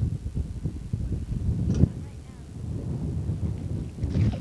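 Wind buffeting the camcorder microphone, an uneven gusty low rumble, with one sharp knock just under two seconds in.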